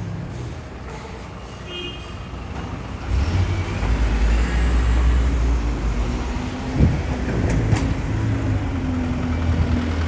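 Street traffic dominated by a heavy engine, most likely a double-decker bus, running close by. It is a low, steady rumble that gets much louder about three seconds in, with two sharp clicks or knocks about seven and eight seconds in.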